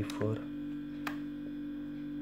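Steady electrical mains hum, with one sharp click about a second in as the calculator's equals key is pressed and the result comes up.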